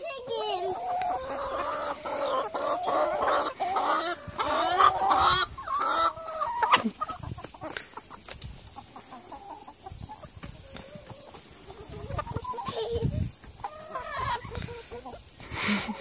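A flock of hens clucking while small children chase them, the calls busiest in the first six seconds, dropping off, then picking up again near the end.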